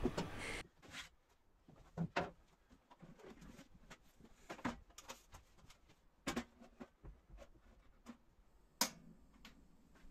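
Scattered quiet knocks and clicks of a portable gas cartridge stove being handled and set down inside a plywood galley box, with a sharper click near the end.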